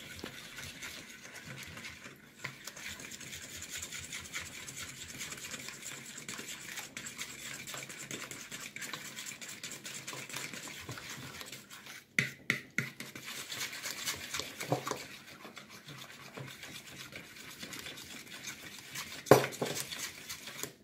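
Wet banana bread batter of mashed banana, eggs and oil being stirred in a plastic mixing bowl: a continuous stirring noise, with a few knocks about twelve seconds in and a louder knock near the end.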